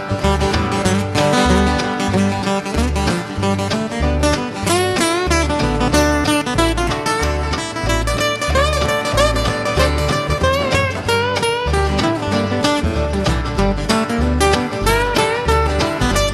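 Live acoustic country-bluegrass band playing an instrumental break with no singing: strummed acoustic guitars, an upright bass walking a steady bass line, and hand drums. A plucked lead line runs on top, its notes bending in pitch.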